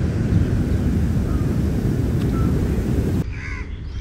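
Wind rumbling on the microphone over breaking surf, steady until it cuts off sharply about three seconds in; a short bird call follows in the quieter scene near the end.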